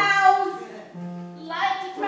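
Children singing a song together in long held notes; the singing fades about halfway through and comes back louder near the end.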